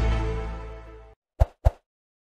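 The closing chord of a channel logo sting fading out over about a second, followed by two short pop sound effects a quarter second apart as on-screen subscribe buttons appear.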